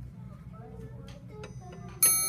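Quiet classroom room tone: a steady low hum with faint voices murmuring in the background.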